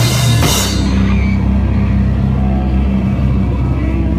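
Live rock band jamming on distorted electric guitars, bass guitar and drums: a cymbal crash about half a second in, then the guitars and bass hold a long ringing low chord while the drums drop out.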